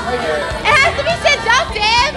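A group of young people's excited, high-pitched shouts and laughter, several voices at once, over music playing in the background.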